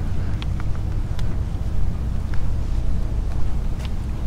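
Car engine running, a steady low rumble heard from inside the cabin, with a few faint ticks.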